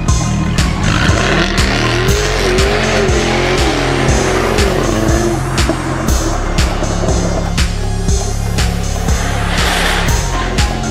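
Background music with a steady beat, mixed with a Jaguar F-Type Coupe's engine whose pitch rises and falls between about one and six seconds in.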